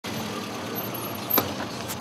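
A car passing slowly and close by over broken asphalt: steady tyre and road noise with one short knock shortly before the end.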